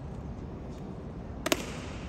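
A single sharp crack, doubled and echoing, about one and a half seconds in, made by the tai chi performer's sudden movement. Under it runs a steady low rumble of hall noise.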